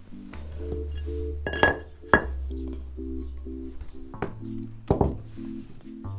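Background music with short repeating chords over a held bass note. Three sharp clinks cut through it, about a second and a half in, at two seconds and near the end: a concrete paving tile knocking against the surrounding floor tiles as it is lifted out by hand.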